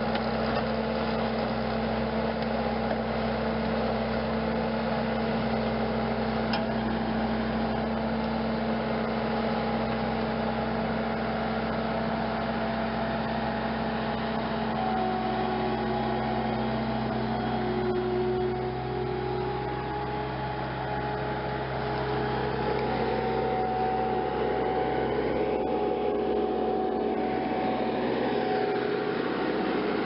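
Skid-steer loader with a hydraulic tree spade, its engine running steadily throughout, with a slight drop in loudness about two-thirds of the way through.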